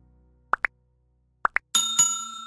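Subscribe-button animation sound effects: two quick pairs of plops, each pair stepping up in pitch, then a bell ding near the end that rings on.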